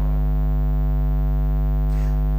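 Steady electrical mains hum: a low buzz with a stack of overtones that holds unchanged throughout.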